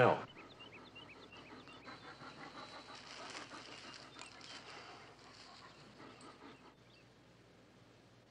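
A German shepherd panting softly in a quick, even rhythm, dying down near the end.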